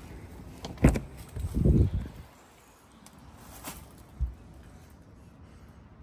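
Mercedes car door being opened by hand: a sharp latch click about a second in, then a dull thump. Another click and a short knock follow near the middle.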